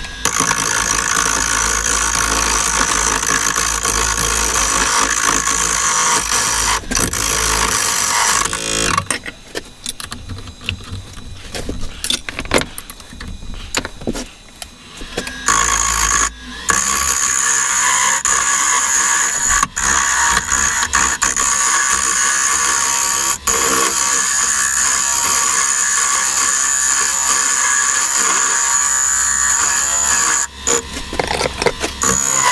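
Wood lathe spinning a small wooden workpiece while a hand-held turning tool cuts into it: a loud, high-pitched cutting noise in two long passes, with a quieter stretch of lighter, broken cuts between about nine and fifteen seconds in.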